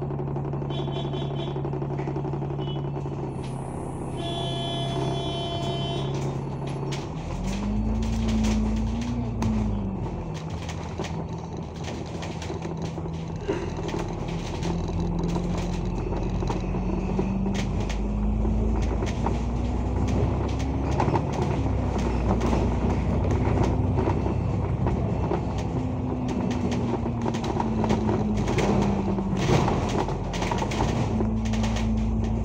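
Alexander Dennis Enviro500 MMC double-decker bus heard from the upper deck. The engine idles steadily at first, then the bus pulls away about seven seconds in, its engine pitch rising and dropping back through gear changes as it gathers speed. Small interior rattles continue throughout.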